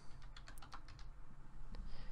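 Soft clicks of a computer keyboard as a handful of keys are pressed to type a number into a spreadsheet cell.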